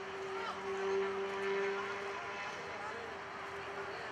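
Voices of players and onlookers calling out, loudest about a second in, over a steady droning hum.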